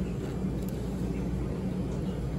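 Steady low machine hum of room background noise, with no sudden events.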